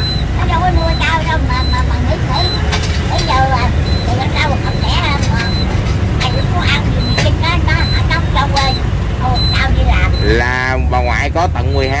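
Busy road traffic, mostly motorbikes, giving a steady low rumble, with a person talking over it. A faint short high beep repeats about twice a second for most of the stretch.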